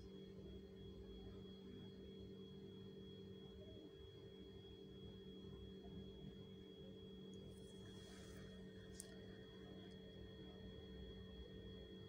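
Near silence: a steady electrical hum of room tone, with a faint brief rustle and a click about two thirds of the way through.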